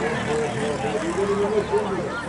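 Several young voices talking and calling out over one another, with a steady low hum underneath.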